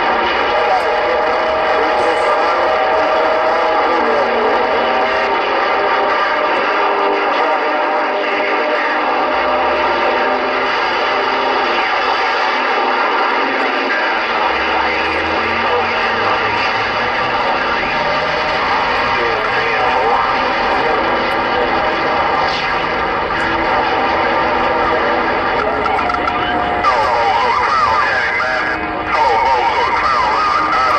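CB radio speaker playing garbled, overlapping voices from distant stations, mixed with steady whistling tones. The voices run without a break and are too distorted to make out.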